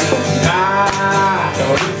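Acoustic folk song performed live: a man's voice sings one long note that swells and bends in pitch, over a strummed acoustic guitar.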